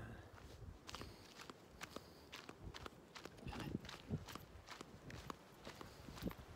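Faint footsteps of a person walking on dry earth and dry grass, in irregular steps.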